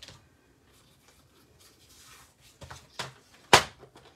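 A plastic paper trimmer set down on a wooden tabletop: a couple of light knocks, then one sharp clack about three and a half seconds in.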